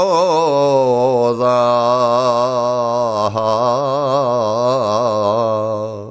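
A man sings a slow, heavily ornamented phrase of a traditional Greek folk song from Nigrita and Visaltia in Macedonia. The voice wavers through turns on each note, then holds a long low note that fades out at the end.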